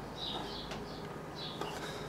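Quiet background with faint, scattered bird chirps.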